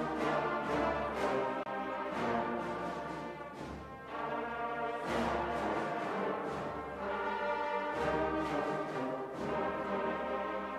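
A large brass band of trumpets, trombones and tubas with drums, playing a slow piece in full sustained chords that change every second or two.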